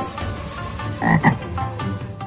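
Frog croaking, two short croaks in quick succession about a second in.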